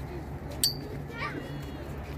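Background voices of people chatting, with children's voices among them, over a steady low hum. A single sharp click about a third of the way in is the loudest sound.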